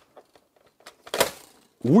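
Clear plastic Nerf dart magazine being pushed into the magazine well of a Nerf Zombie Strike Rev Reaper blaster: a few light plastic clicks, then one louder clack about a second in.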